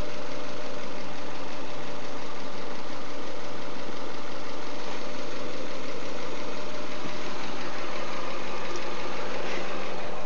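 Car engine idling steadily, heard close by with the hood open. It is the donor car, kept running so that its alternator charges through the jumper cables for the jump-start.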